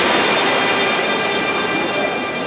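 Loud, steady, echoing din of an indoor competition pool at the finish of a butterfly race: swimmers splashing and spectators cheering, blended into one continuous roar.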